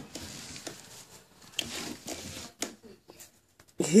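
Rustling and scuffling of plush toys and blankets as a puppy moves about in its bed and tugs at a fluffy toy, with scattered small clicks. A woman laughs loudly near the end.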